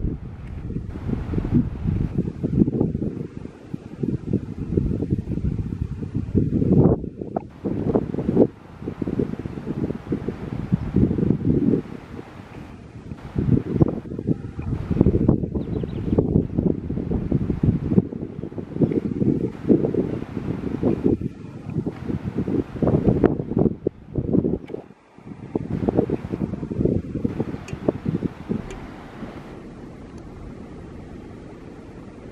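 Wind buffeting the camera microphone: a loud, low rumble that rises and falls in irregular gusts, with a brief lull near the end.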